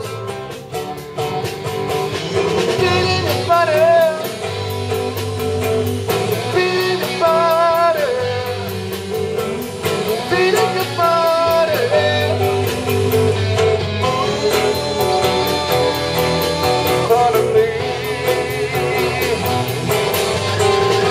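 Live amplified rock band playing: two electric guitars, electric bass and drum kit, with a wavering lead melody coming in and out every few seconds over a steady beat.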